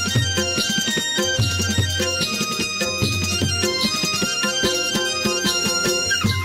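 Traditional Gujarati folk music for the tippani dance: a fast, steady percussion beat under held melody notes.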